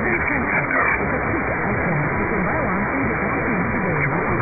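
Distant medium-wave AM broadcast on 990 kHz received on a software-defined radio in lower-sideband mode: a voice partly buried in static hiss, sounding muffled through the narrow receive filter.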